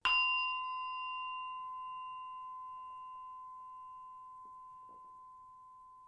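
A bell-like chime struck once: one clear ringing tone with a few higher overtones that dies away slowly and evenly.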